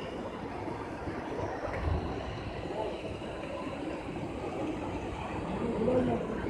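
Indistinct hubbub of many voices and echoing noise in a large crowded hall, with a brief low thump about two seconds in.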